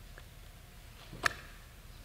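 A pause in speech: quiet room tone with one short, sharp click or breath noise about a second in.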